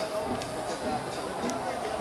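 A pause between a man's sentences, leaving only low, steady background noise.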